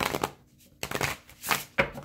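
A deck of tarot cards being shuffled by hand: a few short, irregular flicks and rustles of the cards, a fraction of a second apart.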